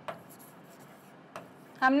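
Faint scratches and taps of a stylus writing on an interactive display screen, a few short separate strokes. A woman's voice starts near the end.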